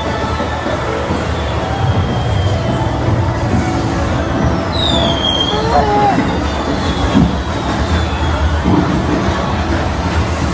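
Steady low rumble of a vehicle running on rails, with a brief high squeal about five seconds in.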